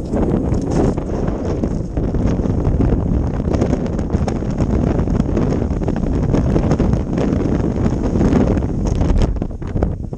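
Strong wind buffeting the camera's microphone: a loud, steady low rumble with short clicks scattered through it.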